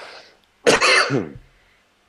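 A man coughing: a soft breathy exhale at first, then one loud, harsh cough about two-thirds of a second in that dies away within a second.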